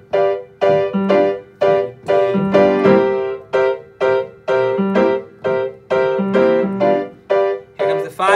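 Upright piano playing repeated block chords of a 12-bar blues progression, struck about two to three times a second, each chord ringing briefly before the next.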